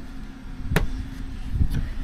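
Latch of a plastic hard case snapping open with one sharp click, then softer knocks as the lid is lifted.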